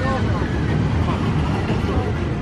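Steady low rumble of outdoor background noise, with faint voices in the distance.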